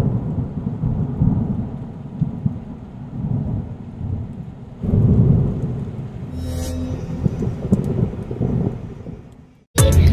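Thunder-and-rain sound effect: low rolling rumbles in uneven swells, with a louder swell about five seconds in, fading away just before the end.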